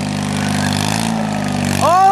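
Small garden tractor engine running steadily under load as the tractor drives into a mud hole, its note rising slightly about a second in. A shout breaks in near the end.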